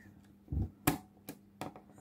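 Four small sharp clicks and knocks of plastic parts as the odometer number wheels and spindle of a Jaeger mechanical speedometer are handled and worked into place. The sharpest click comes about a second in.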